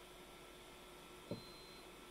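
Near-silent room tone with a faint steady hum, broken a little past a second in by one short soft thump, the plastic indicator dropper bottle being set down.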